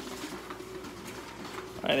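Duplex automatic document feeder of a Xerox WorkCentre 7830 copier running, feeding the test chart through for a double-sided copy: a steady mechanical whir with a low hum.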